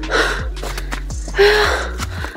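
A person breathing hard, with two loud gasping breaths about a second and a half apart, the second with a short voiced edge, over background music with steady low notes.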